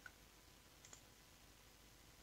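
Near silence: room tone with one faint click of a computer mouse button just under a second in.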